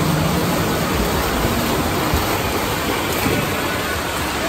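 Steady wash of noise in an indoor swimming pool hall: several swimmers splashing as they swim freestyle, over the general din of the hall.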